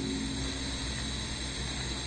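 Steady background hiss and hum of the room and recording, with no distinct event.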